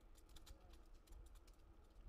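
Faint quick clicking from a bicycle rolling along a paved path, over a low rumble; the clicks thin out after about a second.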